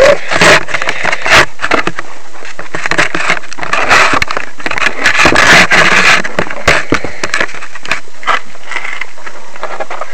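Handling noise: the camera's microphone rubbing and knocking against the arm and shirt of the person holding it, a loud, irregular scraping crackle full of sharp clicks.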